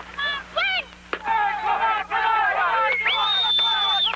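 Several people shouting and cheering at a softball game, voices overlapping, with a sharp knock about a second in and one long high-pitched cry held near the end.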